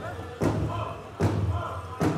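Powwow drum struck in unison by several drummers, two heavy beats about 0.8 s apart, with the singers' voices carrying the song between beats.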